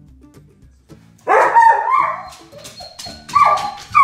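A dog letting out loud, drawn-out barking howls, the first about a second in and a second one about two seconds later, over soft guitar music. It is a sign of the dog's distress at being left alone.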